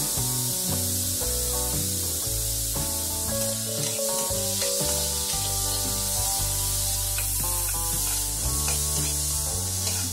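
Chopped onions sizzling steadily in hot oil in a kadai as a perforated steel ladle stirs them, with a few light scrapes of the ladle. Background music with a stepping melody and bass plays over it.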